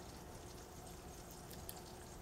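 Faint, steady background noise with a faint low hum: room tone.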